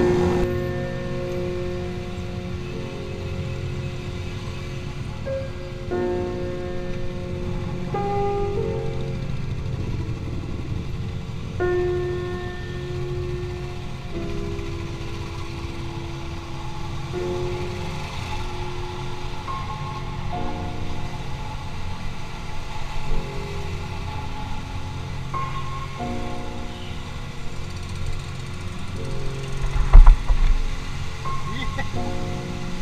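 Music with slow, held melody notes that step to a new pitch every second or two, over a steady low rumble of motorcycle engine and road noise.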